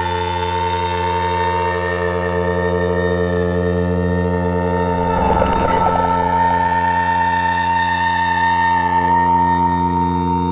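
Ambient synthesizer music: steady held drone tones with a slowly wavering high tone over them, and a short noisy swell about halfway through.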